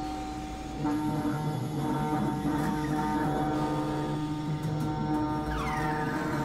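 Experimental electronic drone music: layered, sustained synthesizer tones at many pitches, shifting slowly. Near the end comes a cluster of falling pitch glides.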